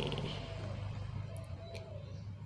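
Faint, soft cooing of a dove, a few short notes over a low steady hum.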